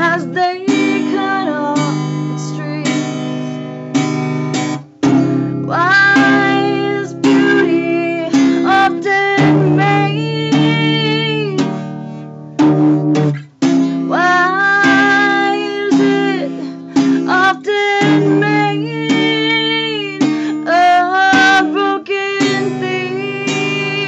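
A woman singing over a strummed acoustic guitar, holding long notes. The guitar drops out briefly about five seconds in and again about thirteen seconds in.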